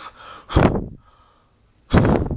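A person blowing two short, hard puffs of air, the breath buffeting the microphone.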